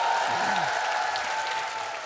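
Studio audience applauding, with a steady held tone running underneath; the applause fades toward the end.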